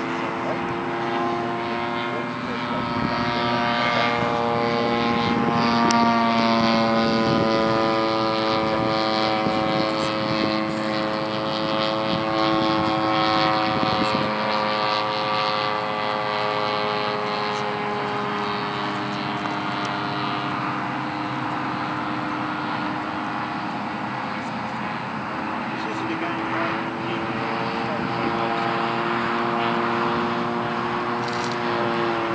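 Engine and propeller of a small fixed-wing UAV flying overhead, a steady buzzing note made of several pitches together. It is loudest about six seconds in, and its pitch slowly sinks and then rises again near the end as the aircraft passes and turns.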